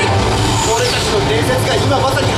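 A voice speaking in the show's soundtrack, over a steady low rumble from the loudspeakers.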